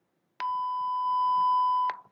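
A single steady electronic beep, one pure high tone lasting about a second and a half, starting just under half a second in and cutting off sharply. It is the cue beep that ends a dialogue segment and signals the interpreter to begin.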